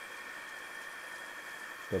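Steady hum and whine of a small drill press motor spinning a shop-built sanding drum, even and unchanging with no load changes.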